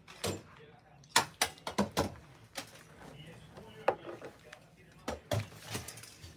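About a dozen irregular sharp taps and knocks close to the microphone, bunched around the second second and again near the end, with faint murmuring in between.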